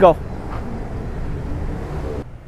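Street traffic noise: a steady rumble of vehicles on a busy city road.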